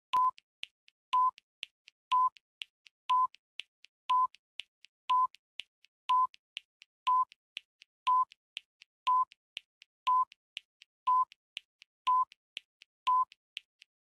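Countdown clock's electronic beeps: a short mid-pitched beep once a second, steady and evenly spaced, marking each second. Two much fainter ticks fall between each pair of beeps.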